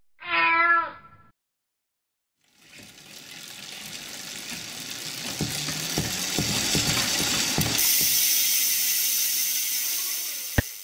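A cat's meow about a quarter of a second in, lasting about a second. After a short silence, a hissing sound swells gradually, with irregular mechanical clicks running through its loudest part.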